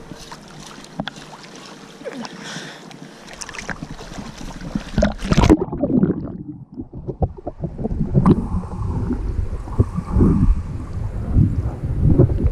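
Lake water lapping and splashing against a GoPro's waterproof housing at the surface. About halfway through the camera goes under and the sound suddenly turns muffled and dull, with low sloshing and thumps of water against the housing.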